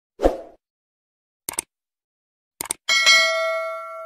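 Animated subscribe-button sound effects: a short thud, two quick double clicks about a second apart, then a bell-like ding that rings on and fades out.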